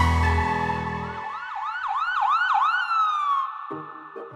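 Ambulance siren sound effect: a quick series of about five rising whoops, ending in one falling tone. It comes in as the song's closing music fades out.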